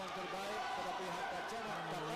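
A male commentator speaking continuously over a steady background haze of arena noise.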